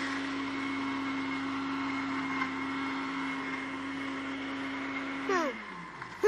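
Electric kitchen blender running at a steady speed, its motor whirring under the noise of the contents, then winding down with a falling pitch about five and a half seconds in.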